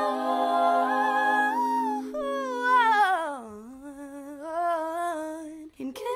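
All-female a cappella group singing wordless held chords. About two seconds in the chord gives way to one voice line that slides down in pitch and then carries on with a wavering vibrato.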